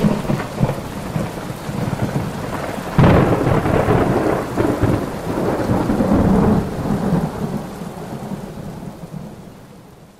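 Thunderstorm with rain falling, a thunderclap at the start and a louder rolling one about three seconds in, the whole storm fading out toward the end.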